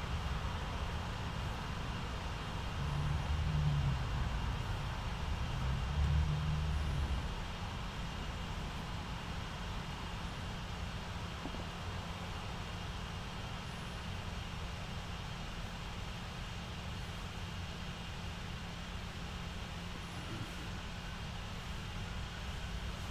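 Low, steady background rumble with a faint hiss, swelling twice in the first seven seconds.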